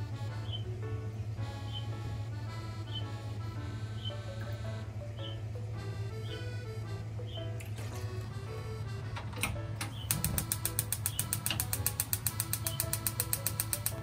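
Background music with a steady beat; about ten seconds in, a gas stove's igniter starts clicking rapidly and evenly, about eight clicks a second, as the burner is lit.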